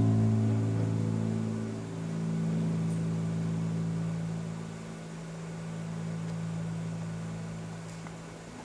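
The last chord of an ambient piece for a guitar ensemble ringing on: low sustained notes that slowly fade, swelling gently a couple of times as they die away.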